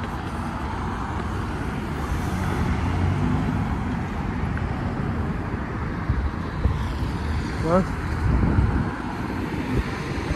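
Road traffic going past in a steady rumble, a little louder near the end as a vehicle passes. A brief rising vocal sound comes about eight seconds in.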